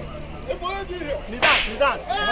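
Men's raised voices in a street confrontation, with one sharp slap about three quarters of the way through.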